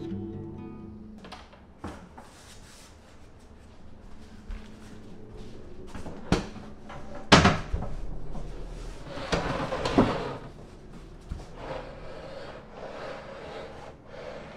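Background music ending about a second in, then scattered knocks, bumps and rustling as a small cabinet is handled in a small room; the sharpest knock comes about seven seconds in.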